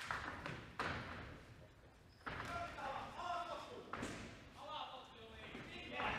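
Kickboxing blows landing: a few sharp thuds a second or two apart, with shouting voices between them.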